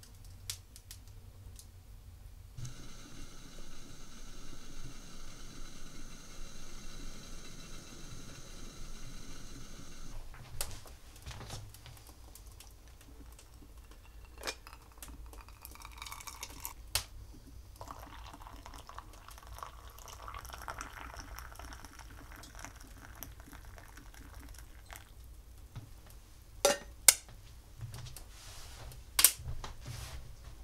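A hot drink poured from a copper pot into an enamel mug, the pour running for several seconds in the middle, amid scattered sharp pops and crackles of a wood fire in a fireplace, the loudest pops near the end. A steady hiss runs from about three to ten seconds in.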